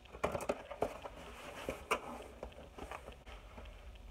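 A screwdriver tip slitting packing tape on a cardboard box, then the box flaps being pried open: a run of sharp clicks, rips and cardboard crackles, several in quick succession in the first second.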